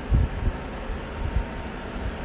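Low rumble and a few soft thumps from a handheld camera being moved about, over a steady background hiss.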